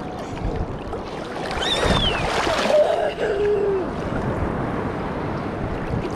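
Sea water sloshing and lapping against a camera held at the surface, a steady rough water noise with the low rumble of the housing bobbing in small waves. About two seconds in, a brief voice with a falling pitch rises over the water sound.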